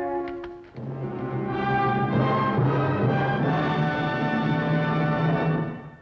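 Orchestral music: a short held chord, then from about a second in a full, loud orchestral passage that fades out near the end.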